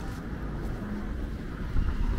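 Street traffic: a steady low rumble of cars, with one car driving past close by near the end, its sound swelling. Wind buffets the microphone.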